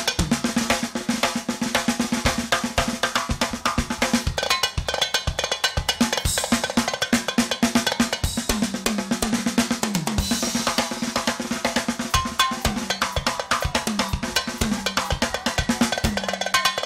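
Live band playing an instrumental passage of dance music: a fast drum-kit beat with snare and bass-drum strokes over sustained keyboard notes.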